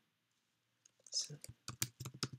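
Computer keyboard being typed on: a quick run of key clicks in the second half, as a package name is entered.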